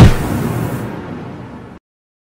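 Logo sting sound effect: a loud, low hit at the start that dies away over under two seconds, then cuts off suddenly.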